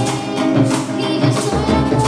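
Colombian folk ensemble playing live: acoustic guitar and tambora drums, with a metal percussion tube keeping a steady, quick rhythm and a girl's voice singing the melody.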